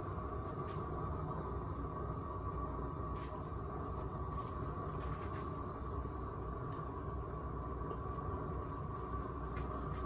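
Gas roofing torch burning steadily against the bottom of a water-filled copper pipe, a continuous low rushing noise as it heats the water to boil steam out of the pipe.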